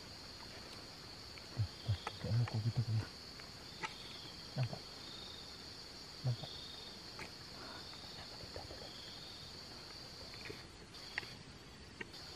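Steady high-pitched insect drone of the forest, with short, fainter chirps repeating below it. A quick run of low thuds in the first three seconds and two more single thuds a little later are the loudest sounds.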